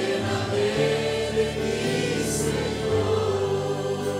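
A congregation singing a worship song together over instrumental accompaniment, with sustained low notes changing in steps under the voices.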